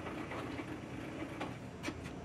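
A few light clicks and knocks from a metal duct lift being handled and positioned, over steady low workshop background noise.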